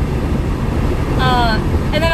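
Steady low road and engine rumble heard inside the cabin of a moving vehicle. A short vocal sound with falling pitch comes a little past the middle.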